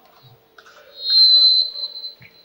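A shrill, steady high-pitched tone starts about a second in and lasts about a second, over a faint steady hum.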